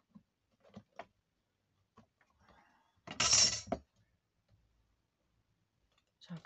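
A few light taps and a rustle of card being handled, then a loud metallic scrape and clink about three seconds in as a steel ruler is moved across the cutting mat.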